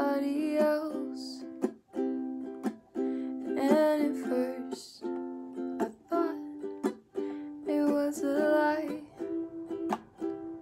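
Concert ukulele strummed in steady chords, with a woman singing over it in short phrases.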